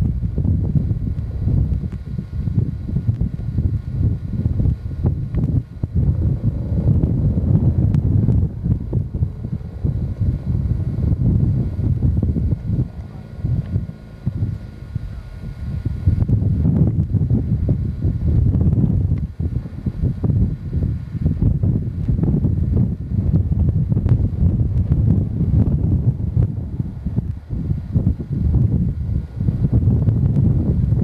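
Wind buffeting the camcorder microphone: a loud, uneven low rumble that eases briefly about halfway through and then picks up again.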